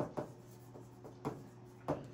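Stylus writing on the glass of an interactive touchscreen display: a few short taps and scrapes, about four, spaced unevenly, as a word is handwritten.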